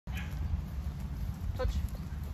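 Low rumble of wind buffeting the microphone outdoors, with a short faint sound about one and a half seconds in.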